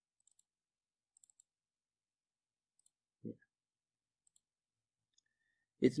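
A few faint computer-mouse clicks, scattered and very short, including a quick run of three a little over a second in.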